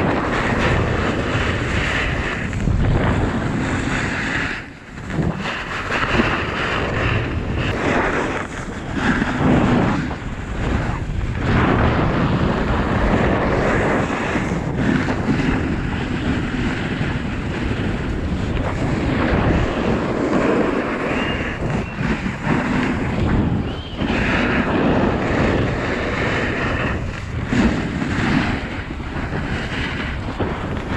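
Wind rushing over the microphone during a fast descent down a snowy ski slope, mixed with the scraping hiss of sliding over the snow. The noise is loud and uneven, rising and falling as the rider moves, with a brief lull about five seconds in.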